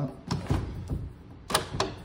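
Sliding patio door and its screen being opened: a few clicks and knocks, the loudest about one and a half seconds in.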